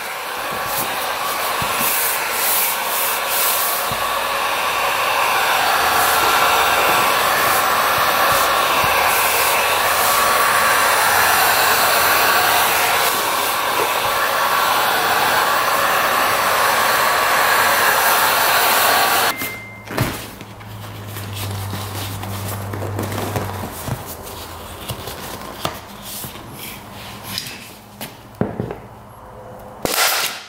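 Handheld heat gun blowing steadily as it heats a vinyl ATV seat cover so the vinyl will stretch. It switches off suddenly about two-thirds of the way in, leaving quieter knocks and clicks from handling the seat.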